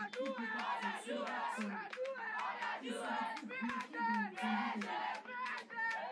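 Group war cry: a youth sports team chanting and shouting together in rhythm, with many voices at once and sharp claps or stamps keeping the beat.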